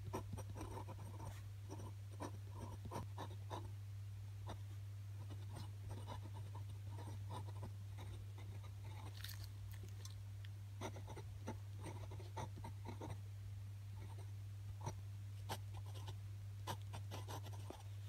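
Glass dip pen scratching and ticking on grid paper in short, irregular strokes as cursive words are written, over a steady low hum.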